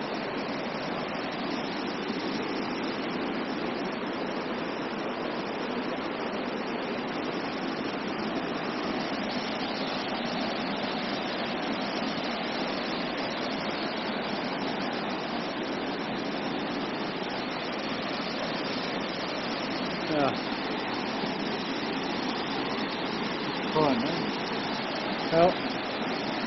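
A mountain waterfall's steady rush of water pouring over granite rocks, heard close up. A few brief voice sounds come near the end.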